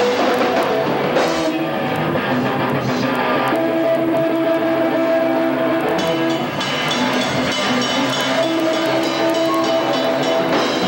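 Live post-hardcore band playing loud: distorted electric guitars over drums, with the guitars holding long sustained notes for a few seconds at a time.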